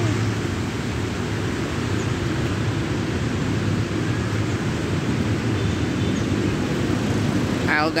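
Steady low rumble of vehicle traffic and running engines, even in level throughout, with a spoken word just before the end.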